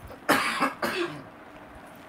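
A person coughing twice in quick succession, two short harsh bursts about half a second apart.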